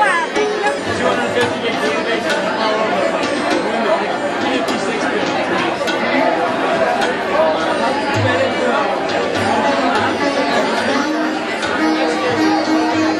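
Many people talking at once in a crowded room, over live sitar and tabla music. Low drum tones come through more often in the second half, and a steady held note enters near the end.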